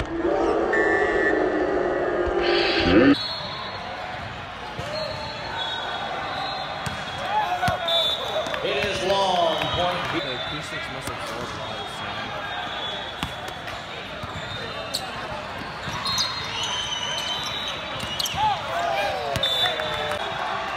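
Volleyball play in a large, echoing sports hall: a loud ball hit about three seconds in, then scattered ball bounces over a steady din of players' and spectators' voices.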